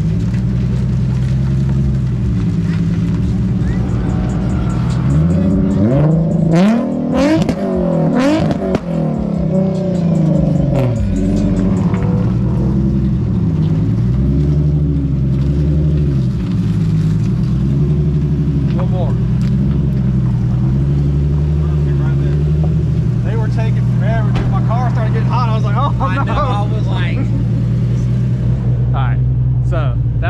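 Nissan 350Z's swapped-in VQ35HR 3.5-litre V6 running at idle, with a few revs rising and falling several seconds in and the idle pitch wavering for a while after. The engine is running hot after a burnout and is being left to idle and cool down.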